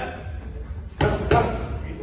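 Two punches landing on a boxing coach's focus mitts, a quick double smack about a second in.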